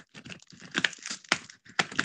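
Irregular crinkling and scratchy clicks of a stiff woven placemat being pressed and worked down over a foam hat form.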